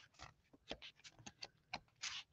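Near silence with faint, scattered ticks and taps of small cardstock pieces being handled and shuffled in the hands.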